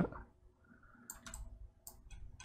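A few faint, sharp computer mouse clicks, a small cluster about a second in and one more near the end.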